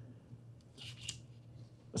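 Faint rustle of paper pages being handled on a lectern, a short burst about a second in, over a low steady room hum.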